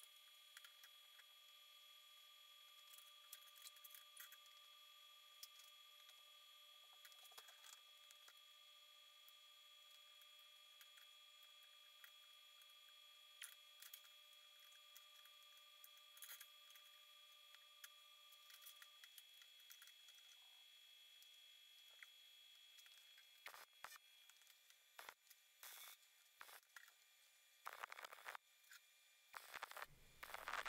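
Near silence with a faint steady whine that stops a little past halfway, and scattered light clicks of steel pieces being handled. Near the end come a few short faint bursts of tack welding with a wire-feed welder.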